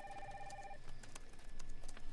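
An office phone ringing briefly: a short electronic trill of several pulsing tones that cuts off under a second in. Light computer keyboard clicks sound around it.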